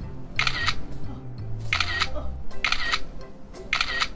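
Smartphone camera shutter sound, four clicks about a second apart as selfies are taken, over background music.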